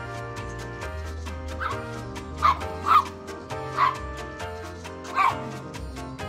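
Chihuahua giving about four short, sharp barks, telling a pestering puppy no, over background music.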